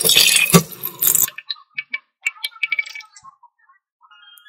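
Tap water splashing into a stainless steel pot while a hand rinses and squeezes raw beef cubes, with squelching and knocks against the pot. It stops after about a second, leaving only a few faint clicks and clinks.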